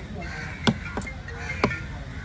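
Heavy cleaver chopping through fish onto a wooden block: two loud chops about a second apart with a lighter one between. Crows cawing in the background.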